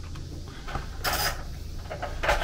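Brief rustling handling noise about a second in, over a steady low electrical hum.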